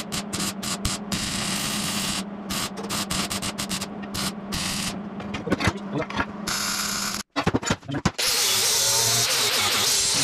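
MIG welder welding steel plate: the arc crackles in short spurts over a steady hum and stops about seven seconds in. After a few brief clatters, an angle grinder runs steadily on the steel from about eight seconds.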